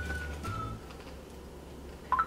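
Background music: a simple melody of held, whistle-like high notes over a steady bass line. The melody stops a little under a second in, leaving the bass quieter underneath.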